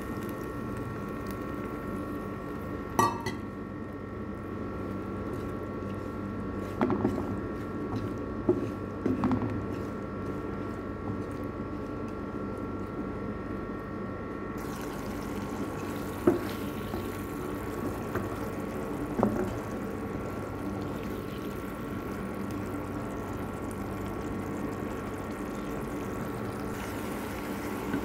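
Saffron water poured into a pan of dried barberries and sugar, which then simmer as the liquid cooks down. A few sharp knocks of a wooden spatula against the pan sound over a steady hum.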